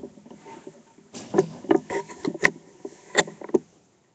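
Handling noise close to the microphone: a run of sharp knocks, taps and rustles, busiest and loudest from about a second in, with the last knocks just before the end.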